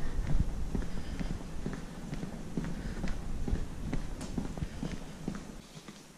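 Footsteps walking on a hard shop floor: irregular short knocks over a low rumble that fades shortly before the end.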